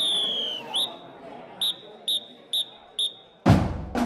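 A marching band's whistle: one long blast that sags in pitch, a short chirp, then four short even blasts about half a second apart, over crowd chatter. The band's drums crash in just before the end.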